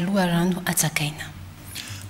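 Only speech: a woman reading the news in Malagasy ends her sentence in the first second, a short quieter pause follows, and a man's voice takes over at the end.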